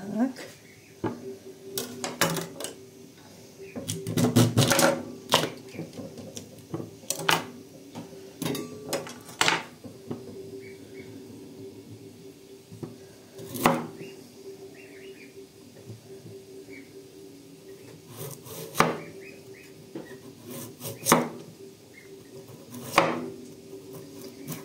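A large kitchen knife chopping a carrot on a wooden board: sharp knocks of the blade on the wood, several in quick succession a few seconds in, then single chops every few seconds. A steady low hum runs underneath.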